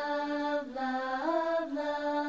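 A children's song sung in long held notes, the voice stepping up and down between pitches.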